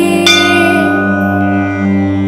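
Instrumental pause in devotional music: a bell-like chime struck once, just after the start, ringing on and fading over a steady drone.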